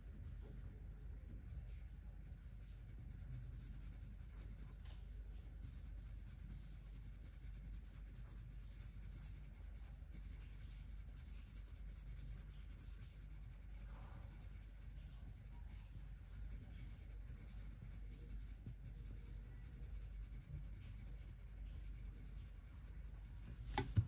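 Leo&Leo Carbon Line wax-core colored pencil shading lightly on paper: faint, steady strokes of the lead with light pressure.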